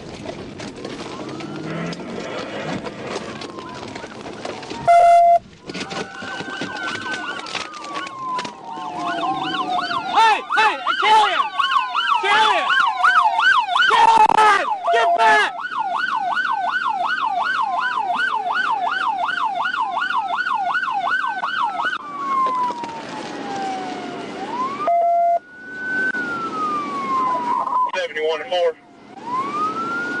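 Police car sirens sounding. A slow rising-and-falling wail changes to a fast yelp of about two cycles a second, with a second siren overlapping for a few seconds, then goes back to the wail near the end. Several sharp knocks come in the middle.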